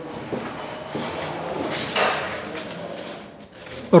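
Plastic film wrapping on rolls of vibration-damping floor underlay rustling as it is handled, loudest in a hissing crinkle about two seconds in, with faint voices in the background.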